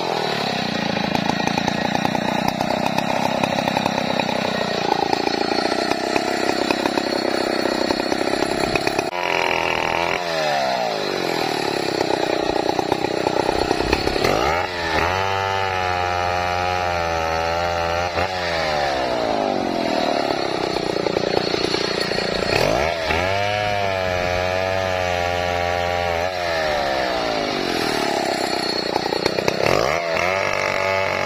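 Chainsaw running at high revs as it cuts through felled sengon trunks and branches. The engine pitch sinks and climbs again several times as the cuts go on.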